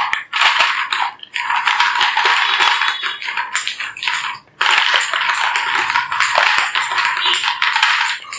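A heap of small hollow plastic balls clattering together as hands scoop and push them into a plastic bowl: a dense, continuous rattle of clicks, with a brief break about halfway through.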